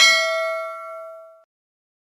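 Notification-bell sound effect: a single ding that rings on and fades out over about a second and a half.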